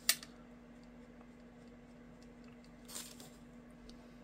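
Quiet room tone with a faint steady hum. A short sharp hiss comes right at the start, and a soft faint rustle about three seconds in.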